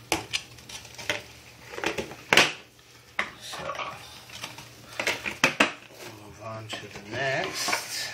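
Clear plastic tarantula enclosures (deli cups) handled and set down on a tile floor: a string of sharp plastic clicks and knocks.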